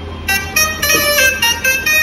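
Shehnai patch from MainStage played from a Yamaha PSR-SX900 keyboard: a fading held note, then a quick melodic run of several notes starting about a quarter second in.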